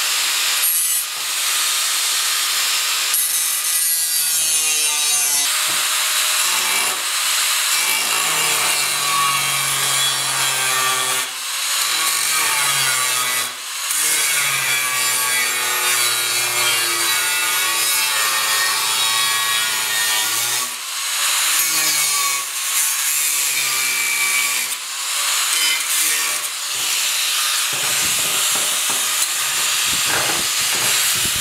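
Angle grinder with a thin zip cut-off disc cutting through steel checker plate, a loud hissing grind with a few brief let-ups as the cut is eased off and restarted.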